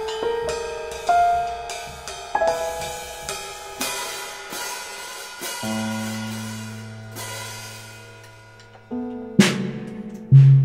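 Keyboard and drum kit playing together: held keyboard notes and chords over cymbal and hi-hat strokes, with low held notes from about halfway and a loud cymbal crash near the end.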